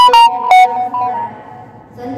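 A short musical jingle of bright, ringing pitched notes struck in quick succession, which die away about a second and a half in.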